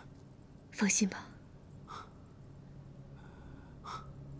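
A weak, ailing man's breathy, whispered speech: one short strained utterance about a second in, then a couple of faint breaths.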